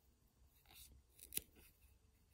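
Near silence, with a few faint rustles and clicks a little before and after the middle, the sharpest a single tick: a crochet hook being worked through yarn.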